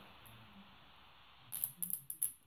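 Protective plastic film being peeled off a phone's screen: a short run of crisp crackling rips about one and a half seconds in, after a quiet start.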